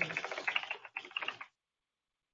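Typing on a computer keyboard: a quick run of key clicks for about a second, a brief pause, then a shorter run that stops halfway through.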